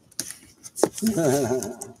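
A knife slitting the seal of a cardboard box, heard as a run of crackles and light clicks with one sharper click a little under a second in. Then a man laughs.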